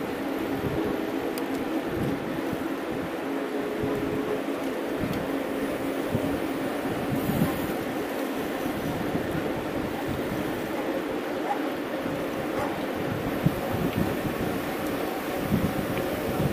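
A pack of mountain bikes rolling fast on asphalt: a steady hum of knobby tyres and running drivetrains, with gusty rumble at the low end.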